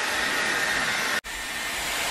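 Dyson Airwrap hair styler running, a steady rush of blown air with a faint high motor whine, as a wet section of hair is wound onto its curling barrel. The sound cuts out for an instant about a second in, then carries on.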